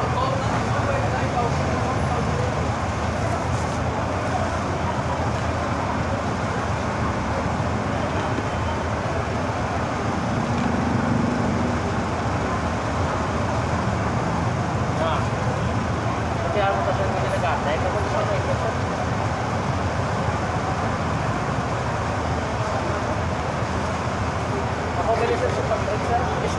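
Steady street traffic noise with indistinct voices in the background.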